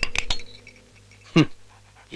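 A dog gives one short whine that falls steeply in pitch, about a second and a half in. It comes after a few sharp clicks at the start.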